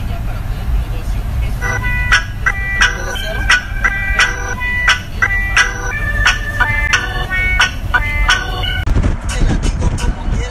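Steady low rumble of a car's cabin while it drives. About two seconds in, a quick tune of short, high, clear notes starts over the rumble and ends just before the final second.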